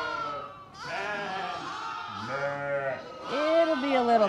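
Sheep bleating, about three separate calls, with the loudest near the end. These are ewes and lambs calling to each other to match up again after being separated in the pen.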